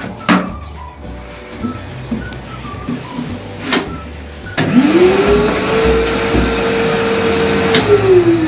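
Construction wet/dry shop vacuum switched on about halfway through: the motor spins up and runs with a steady whine, its filter just cleaned after it clogged and lost suction, now running without a dust bag. Before it starts, a few clicks and knocks as the unit is put back together.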